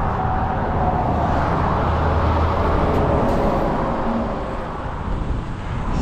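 Road traffic passing on the bridge beside the bike path: a vehicle's low rumble swells to a peak about two to three seconds in and then fades away.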